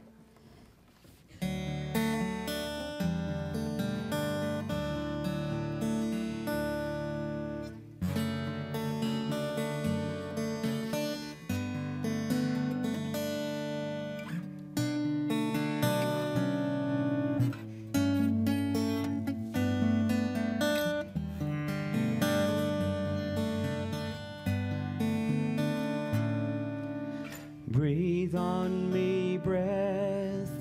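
Acoustic guitar, plugged in and amplified, strummed in steady chords as the instrumental introduction to a worship song. It starts about a second and a half in, after a brief hush.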